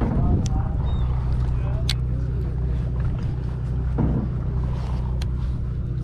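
A sportfishing boat's engine running with a steady low drone, with a few sharp clicks and faint voices over it.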